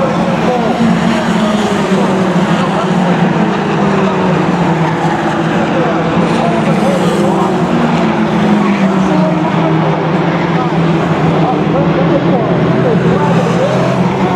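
Fox-body Ford Mustang mini stock race cars running laps together, their engines going steadily with pitch gliding up and down as they lift and accelerate through the turns.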